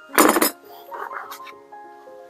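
A short metallic clink-clatter about a quarter second in as metal scissors are set down on a workbench, followed by faint handling noise and a small click around a second in. Background music with steady notes plays throughout.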